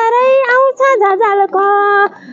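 A woman singing solo without accompaniment, a melodic vocal line that ends the phrase on a steady held note near the end.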